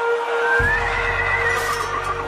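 A horse whinnying once, a high wavering call lasting about a second and a half, with a low rumble starting suddenly about half a second in, over soft background music.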